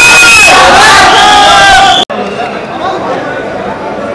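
A group of men shouting and cheering, with long held yells. About two seconds in it cuts off suddenly to quieter crowd chatter.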